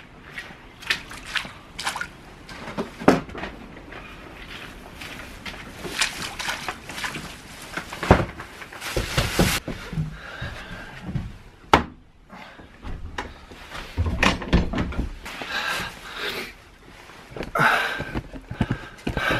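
Rain pouring down outside an open school bus door, with splashing steps in rubber boots and scattered knocks as someone climbs up into the bus.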